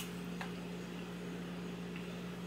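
Quiet room tone with a steady low hum, and one faint short click about half a second in.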